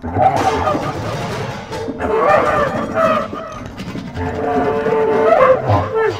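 Free improvisation on bass clarinet and drum kit: the bass clarinet comes in loudly at the start with held and bending notes, often several pitches at once, over a few scattered drum and cymbal strikes.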